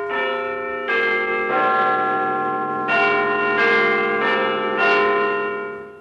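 Large bells chiming a slow melody of single strikes, each note ringing on under the next. There is a short pause midway, and the chime fades out near the end.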